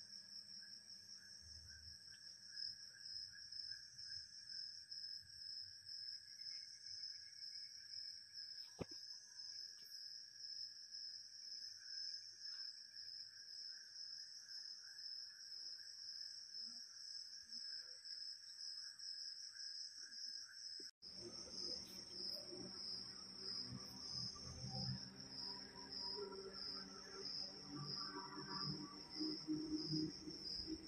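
Dusk insect chorus: crickets chirring in a steady, fast-pulsing high trill over a lower, steady insect drone. The sound breaks off for an instant about two-thirds of the way through. The chirring then resumes with uneven lower sounds added.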